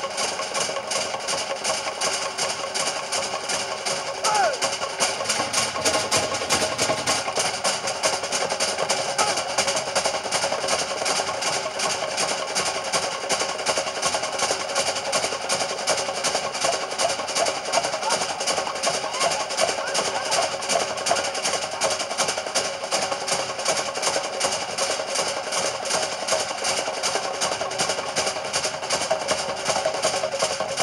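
Fast, unbroken drumming on wooden log drums and drums, the accompaniment to a Samoan fire knife dance; it gets a little louder about four seconds in.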